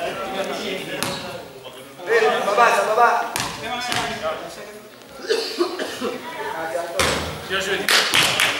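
Men's voices talking and calling in an echoing sports hall, with a few sharp knocks on the hard floor, the loudest about seven seconds in.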